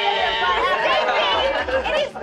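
Several voices at once, overlapping.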